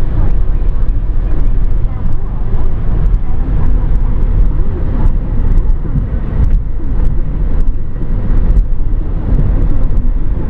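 Steady low rumble of road and engine noise inside the cabin of a car cruising on a multi-lane highway.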